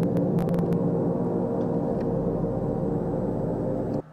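Several large hanging gongs ringing together in a dense, shimmering wash of many overlapping tones, with a few sharp clicks in the first second. The ringing stops abruptly at the end.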